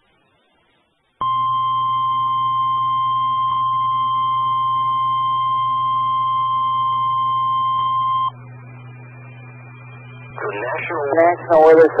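Weather-radio warning alarm tone over a radio feed: a single steady tone lasting about seven seconds, starting just over a second in, with a low hum under it. It cuts off abruptly, and after a short quieter gap a voice begins reading a severe thunderstorm warning near the end.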